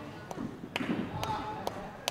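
Faint voices murmuring in a large hall, with a few scattered sharp taps or knocks.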